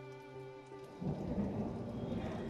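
Background music holding one steady low note with its overtones. About a second in it gives way to a low rumbling noise.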